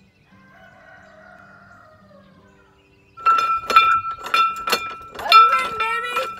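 A faint rooster crow, then a cast-iron farm bell on a yoke rung by its pull cord from about three seconds in. It clangs over and over, about twice a second, with a ringing tone that carries between strikes.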